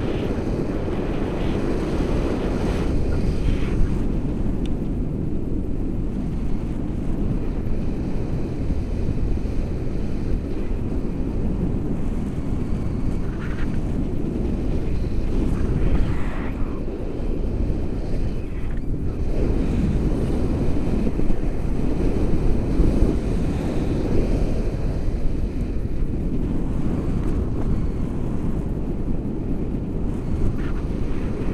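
Wind from flight rushing over the microphone of a pole-mounted action camera on a tandem paraglider: a steady, dense low rumble with a few stronger gusts.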